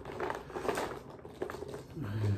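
Small plastic lip balm tubes rustling and clattering as a hand rummages through them in a bucket, in short irregular bursts, with a man's breathy laughter.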